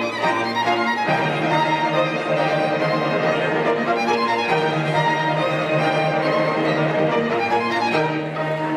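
Small string ensemble of violins and cellos playing together, with held low cello notes beneath the violins.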